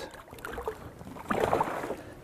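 Water sloshing and lapping against the side of a small boat, a little louder past the middle.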